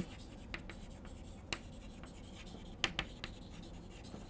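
Chalk writing on a blackboard: faint scratching of the chalk, with a few short, sharp taps as strokes are begun.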